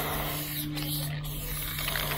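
Aerosol spray paint can spraying a green fill onto a wall: a steady hiss of paint leaving the nozzle, with a low steady hum underneath.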